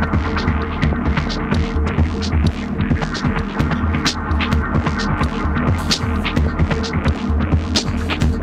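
Electronic drone music from a techno and ambient DJ mix: a deep, steady low hum with a held mid tone, overlaid by scattered clicks and crackles, with no regular beat.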